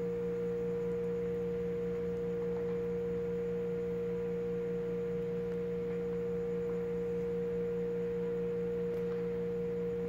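Steady, unchanging pitched hum: one clear pure tone with a lower hum beneath it.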